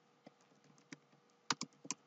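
Computer keyboard keys being typed, faint: a few scattered keystrokes, then a quick run of them near the end.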